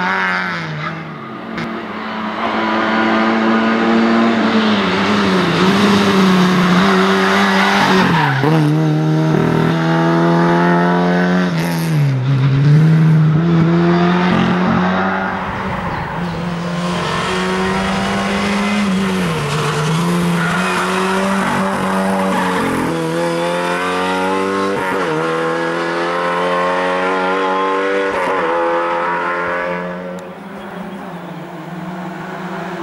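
Lada 2107 race car's four-cylinder engine running hard at high revs. Its pitch climbs and then drops sharply several times as it shifts through the gears.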